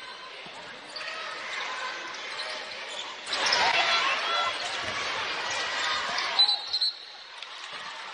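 Basketball game sounds: the ball dribbling and sneakers squeaking on the hardwood court over steady arena crowd noise. The crowd swells about three seconds in, and a few sharp knocks come near the end.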